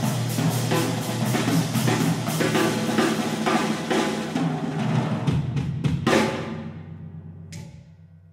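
Jazz drum kit played by itself: rapid strokes on snare, toms and bass drum, then a cymbal crash about six seconds in that rings and fades, and a last short cymbal tap near the end.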